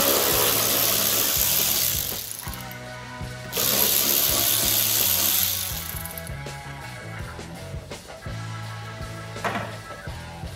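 Background music with a steady beat, over two bursts of a power tool running for about two seconds each, one at the start and one about three and a half seconds in.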